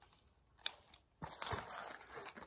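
A light click, then a small plastic bag crinkling and rustling for about a second as it is picked up and handled.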